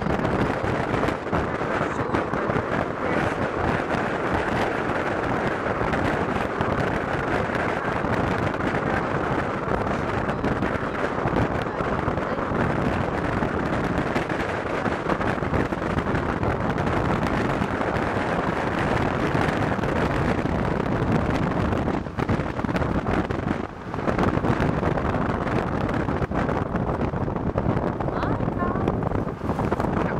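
Steady rushing road and wind noise from a moving car, with wind buffeting the microphone. There are two brief drops in the noise about two-thirds of the way through.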